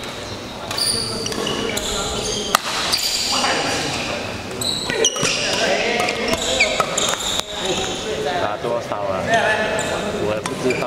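Badminton doubles rally: rackets striking the shuttlecock with a few sharp cracks, and shoes squeaking briefly on the hall's court floor, over background voices.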